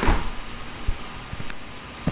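Quiet room tone: a steady low hiss from the recording microphone, with a couple of faint clicks.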